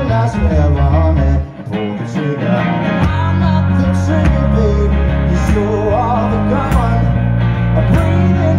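Live blues-rock played loud, with guitar over a heavy bass line. The music drops out briefly about a second and a half in, then comes back with the bass holding long, steady notes.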